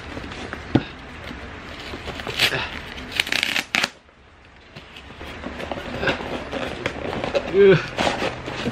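Cardboard shipping box being handled and torn open by hand: rustling, scraping and tearing of cardboard, with a louder scratchy stretch about two to four seconds in.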